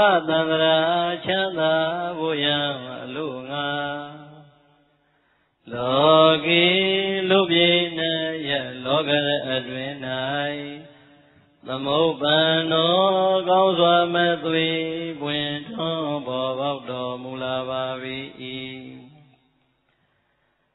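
A man chanting Buddhist verses in Pali in a slow, melodic recitation. There are three long phrases, each trailing off, with short pauses between them.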